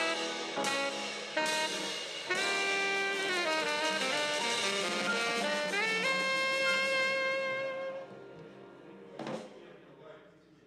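Live jazz from a quartet of piano, guitar, bass and drums: a melody line slides between held notes, then a last long note rings and fades out about eight seconds in as the tune ends. A short noisy burst follows about a second later.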